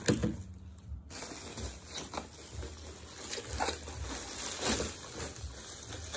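Clear plastic packaging bag crinkling and rustling as it is handled and unwrapped, starting about a second in as a dense run of small crackles.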